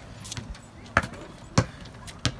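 A basketball bouncing on concrete pavement: two loud bounces about half a second apart, the first about a second in.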